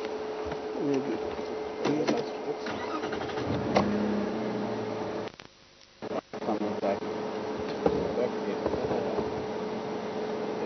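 Vehicle engine running, with faint, indistinct voices and a steady electrical hum. The sound drops out almost completely for about a second just past the middle.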